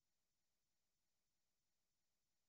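Near silence: a very faint, steady background hiss.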